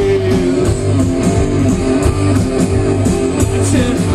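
Punk rock band playing live, loud: electric guitar to the fore over bass and a steady drum beat.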